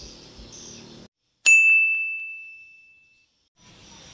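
A single sharp bell-like ding rings out at one clear high pitch and fades away over about two seconds. It sits in a gap where the background sound drops to dead silence.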